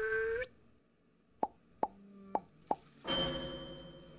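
A held whistle-like tone cuts off about half a second in. Four short, sharp plops follow, spread over about a second and a half. A sudden swell of sound comes near the end and fades away.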